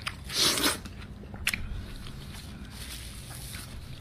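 A bite into a slice of yellow watermelon, one crunching bite about half a second in, then a short sharp click about a second later, over a faint steady hum.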